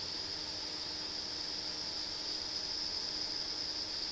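A steady high-pitched whine over an even background hiss, with a faint low hum underneath; nothing starts or stops.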